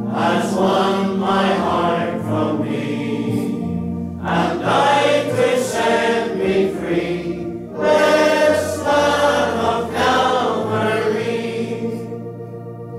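Church congregation singing a hymn in unison with organ accompaniment holding low sustained notes, the voices pausing briefly between lines.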